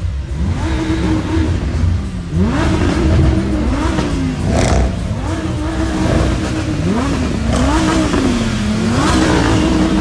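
Sports car engines revved over and over, each rev climbing in pitch, holding briefly and dropping back. A short sharp crack comes about halfway through.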